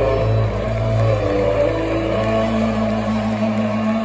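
A live rock band's electric guitar and bass holding a closing chord through the PA, heard from the audience. The chord sustains steadily, and the deep bass note drops out near the end.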